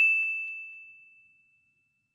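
A single bright 'ding' chime sound effect, one high ringing tone that fades away over about a second, accompanying an animated like-button pop-up.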